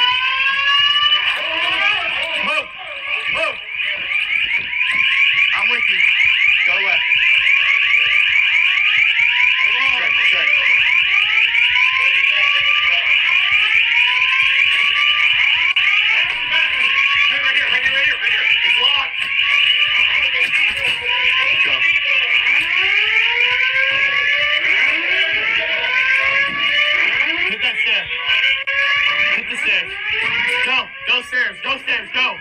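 School fire alarm blaring continuously: a loud, high, rapidly pulsing tone that keeps sounding without a break.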